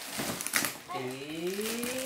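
Cardboard box flaps rustling twice as the box is pulled open, then a person's long drawn-out hum that slowly rises in pitch.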